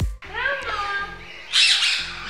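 A bird squawking: a short call that rises and falls in pitch about half a second in, then a harsher, noisier squawk near the end.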